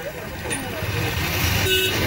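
Road traffic sound: a motor vehicle running with people's voices in the background, and a short vehicle horn toot near the end.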